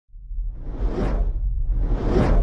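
Cinematic whoosh sound effects over a deep steady rumble: one sweep swells to a peak about a second in and fades, and a second starts building near the end.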